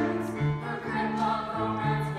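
Live piano accompaniment playing a tango, with a low bass note moving about twice a second under a higher melody.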